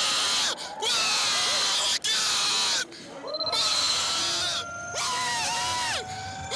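A racing driver screaming and shouting in celebration over crackling, heavily distorted team radio, in bursts of about a second and a half with short breaks between them. A faint steady whine, rising slowly in pitch, runs underneath.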